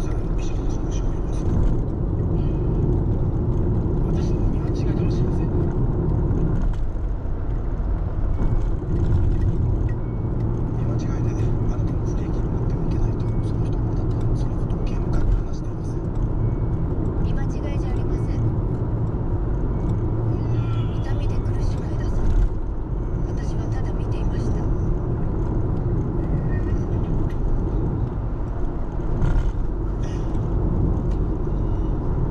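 Steady road and engine rumble heard from inside a car's cabin while driving at expressway speed.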